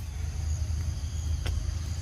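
Outdoor forest ambience: a steady low rumble under a continuous high-pitched insect drone, with one sharp click about one and a half seconds in.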